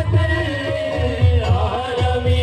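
Live naat sung qawwali-style by male voices over microphones, a wavering held melody line with a steady harmonium drone. Low tabla strokes beat unevenly underneath.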